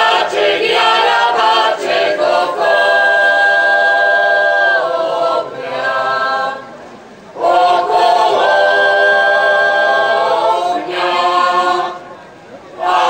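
Mixed choir of women and men singing a Slovak folk song unaccompanied. The phrases end in long held notes, with a short breath break about seven seconds in.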